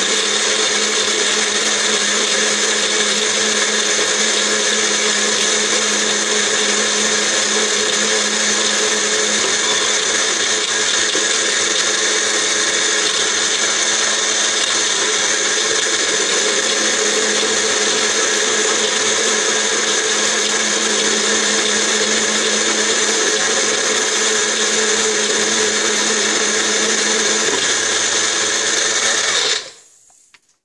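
A Nutribullet 600 and a Magic Bullet blender running together, blending spinach, carrots, celery and water into a smoothie. The motor noise is steady and loud throughout, then cuts off suddenly near the end.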